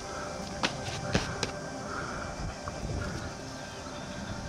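A few soft clicks and scrapes of fingers on dry, cracked soil around a small stone meteorite as it is worked loose, over faint background music.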